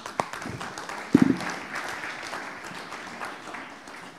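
Audience applauding, a dense round of clapping in a hall. About a second in there is a brief louder sound close to the microphone.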